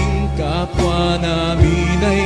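Music of a Tagalog devotional hymn to San Roque: a melody over a steady bass line, with a few soft low beats.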